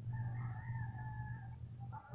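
A single drawn-out animal call, held at a nearly steady pitch for about a second and a half, over a steady low hum.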